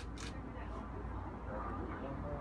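DSLR camera shutter firing once at the very start, a quick double click.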